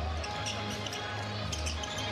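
A basketball being dribbled on an arena's hardwood court during live play, with arena music and a steady low crowd-and-hall hum underneath.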